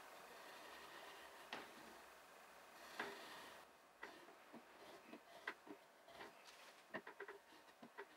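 Near silence, with faint scattered ticks and light scratching from a brass marking gauge being run over a wooden blank to scribe a depth line.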